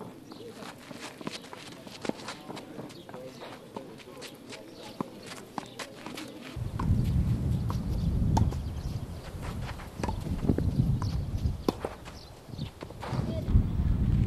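Tennis balls struck by rackets and bouncing on a clay court during rallies, a series of sharp pops. From about halfway through, wind buffets the microphone with a low rumble.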